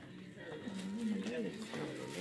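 A person's voice making a wordless sound whose pitch rises and falls in waves, starting about half a second in.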